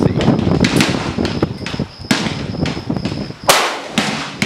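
Several gunshots from other shooters' rifles, sharp reports a second or less apart with a short echo after each. The loudest comes about three and a half seconds in.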